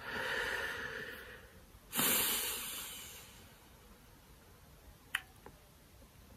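A man breathing close to the microphone: two long breaths, the second beginning about two seconds in and fading away, then a small click near the end.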